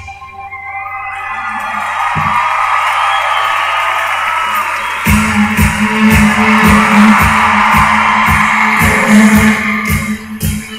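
Live pop-rock concert music with crowd cheering: after a brief dip in the band, a held vocal and cheering swell up. About halfway through, a steady kick-drum beat with a bass line comes in.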